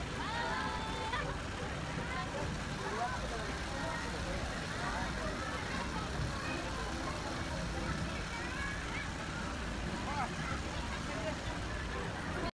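Scattered voices of several people talking and calling out, over a steady low rumble.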